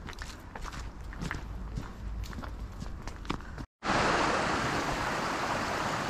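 Footsteps on a gravel trail, irregular steps. After a sudden cut about two-thirds of the way in comes the steady, louder rush of a small stream cascading over rocks.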